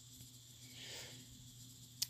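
Near silence: room tone with a faint low hum, and a soft, faint rustle about halfway through.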